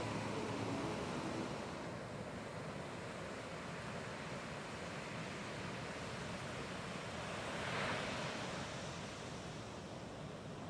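Ocean surf: a steady wash of breaking waves, with one louder surge of breaking water about eight seconds in.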